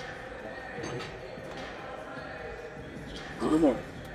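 Gym room ambience with a faint steady hum under it. Near the end a man's voice urges "one more".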